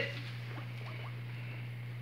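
Low steady electrical hum from the church's sound system during a pause in speech, with a few faint, brief squeaks in the first half of the pause.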